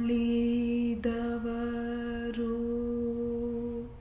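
A woman singing one long held note at a steady pitch, broken briefly twice and fading out near the end, closing a poem sung in Kannada.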